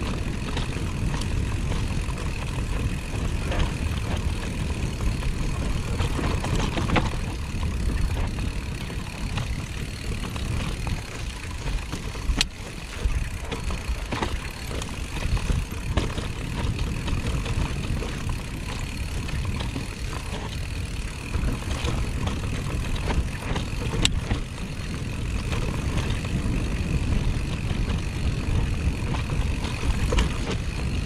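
Wind rumbling over the camera microphone as an electric mountain bike rolls downhill on a dirt and grass singletrack, with tyre noise and the bike's rattles; a couple of sharp knocks from the bike over the trail, one about halfway through and one later.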